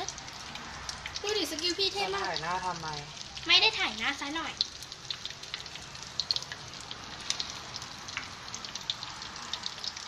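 Food deep-frying in hot oil in a wok: a steady sizzle with scattered small crackles and pops.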